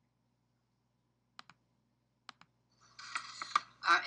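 Two quick double clicks, about a second apart, from a computer mouse or keyboard. Near the end a woman's voice starts speaking.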